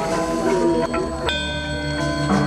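Balinese gamelan playing: layered ringing metallophone notes struck in overlapping patterns. A strong new stroke comes about 1.3 s in, and a low, pulsing hum rings on after it.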